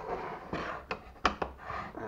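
Handling noise as a tablet and its wooden stand are lifted off a desk: a few light knocks with soft rubbing and rustling between them.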